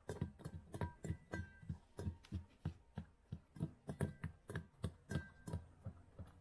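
Samoyed puppy licking blocks of milk ice and plain ice in a stainless steel bowl: a quick run of wet laps, about three or four a second, with the ice now and then clinking briefly against the steel.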